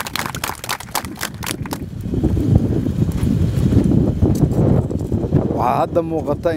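Rapid clicking and rubbing of a hand-held clip-on microphone against a suit jacket, then a dense low rumble for a few seconds; a man's voice resumes near the end.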